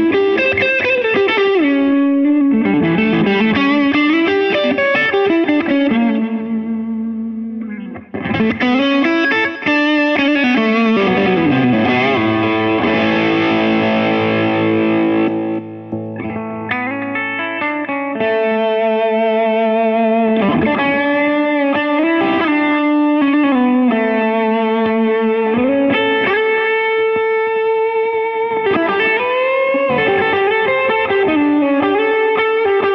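Electric guitar with Lollar DC-90 hum-cancelling P-90-style pickups, played through a bright distortion pedal into a Supro 12-inch combo amp. Distorted single-note lines with string bends, and a chord held ringing for several seconds about a third of the way in.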